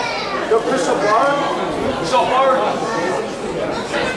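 Indistinct chatter of several people talking over one another close by, with no words standing out.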